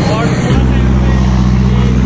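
Light cargo truck's engine passing close by on a hill road, a steady low drone that starts about half a second in and keeps on to the end.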